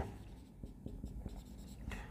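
Marker pen writing on a whiteboard, a run of faint short strokes.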